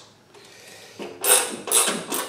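Hand ratchet with an extension clicking in three short bursts in the second half as it runs down the oil pan bolts.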